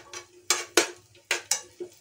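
Metal spoon clinking against a non-stick frying pan while stirring cashews and raisins frying in ghee: a series of about six sharp, separate clicks.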